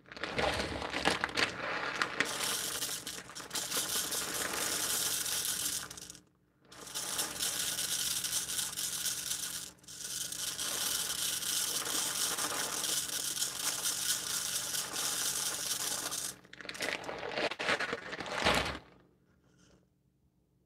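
Dry rice grains poured from a plastic bag through a funnel into a small fabric bag, a steady hiss of running grains while filling a rice-bag seam press. It comes in three long pours broken by brief pauses, then a shorter, louder pour that stops sharply about a second before the end.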